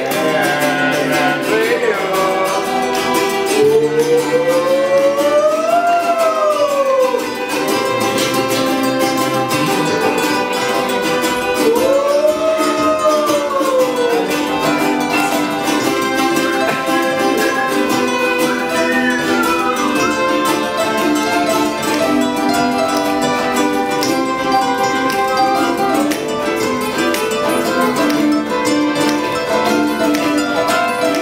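Live acoustic band playing an instrumental passage: strummed acoustic guitars with violin over them. A melody with long notes that slide up and back down comes in a few times.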